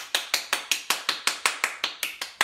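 One person clapping, quick and even, about six claps a second.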